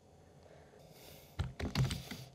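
Near silence, then about a second and a half in a quick cluster of computer keyboard key clicks.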